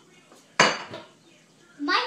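A single sharp clink of a hard kitchen utensil or dish knocked against the counter, about half a second in, with a brief high ring that dies away quickly.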